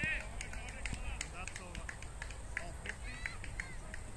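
Scattered, irregular hand claps from a few people, applauding a six just hit. High calls or shouts sound near the start and again about three seconds in.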